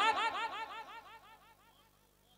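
A man's voice through a public-address system with a heavy echo effect: the tail of his last word repeats rapidly and fades away over about a second and a half, then near silence.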